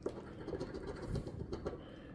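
A metal coin scratching the latex coating off a lottery scratch-off ticket: faint, irregular scratchy strokes that die away near the end.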